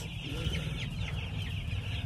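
A brooder full of two-week-old chicks peeping nonstop, many high chirps overlapping, over a low steady rumble.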